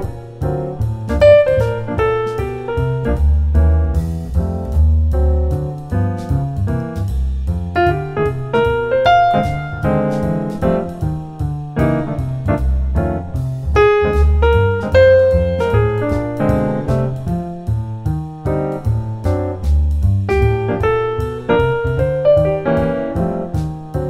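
Jazz piano playing improvised motifs over deep bass notes and a steady ticking beat, each short phrase answered by the same rhythm displaced by an eighth note.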